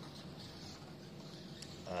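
Faint running sound of a mini electric RC car driving on a carpet track, over a low steady background hum.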